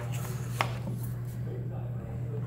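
A single sharp tap about half a second in, over a steady low hum of room noise, with faint rustling afterwards.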